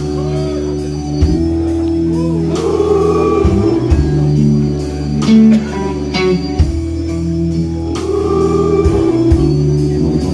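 Live blues-rock band playing: electric guitar, bass guitar, drums and Hammond organ holding sustained chords, with a group of voices singing along.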